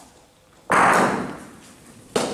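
A single sudden loud thud about two-thirds of a second in, with a long echoing tail that dies away over most of a second.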